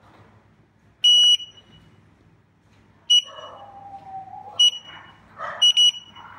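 Electronic beeps from a Ninebot One S2 electric unicycle as its power button is pressed: one longer high beep about a second in, two single short beeps, then a quick double beep near the end, with light handling noise between.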